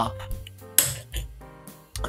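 A short, light clink of a cotton swab against the small metal dish on top of a pump-type solvent dispenser, a little under a second in, with a weaker tap just after. Soft background music with steady held tones runs underneath.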